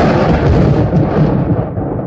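Explosion-like boom sound effect: a sudden loud crash that dies away into a long, deep rumble, standing for God's sign striking the doubter down.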